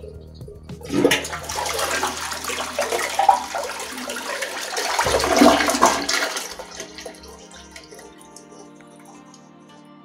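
Toilet flushing from a close-coupled cistern: the rush of water starts about a second in, is loudest for about five seconds, then tapers off.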